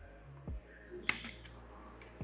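A single sharp snip of hand wire cutters about halfway through, among a few soft handling knocks, over faint background music.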